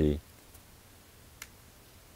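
The tail of a spoken word, then quiet room tone with one faint, short click about one and a half seconds in.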